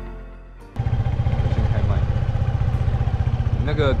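Motor scooter engine running at low speed, a loud low rumble with a quick, even pulse that cuts in sharply about a second in as background music fades out.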